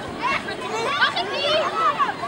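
Several children shouting and calling out over one another in high voices.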